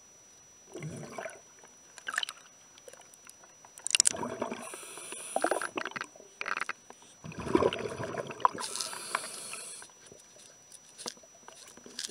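A diver breathing underwater through a scuba regulator: hissing inhalations and bubbly exhalations, with two long breaths about four and seven seconds in and shorter, softer ones before.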